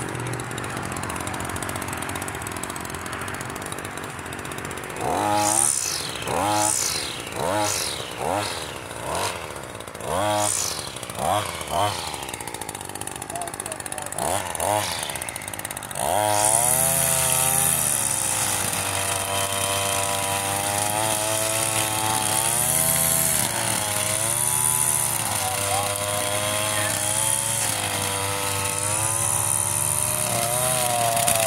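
Shindaiwa 2620 string trimmer's two-stroke engine idling, then revved in about eight short blips. About halfway through it goes to a steady high-speed run, its pitch wavering under load as the line cuts through tall grass.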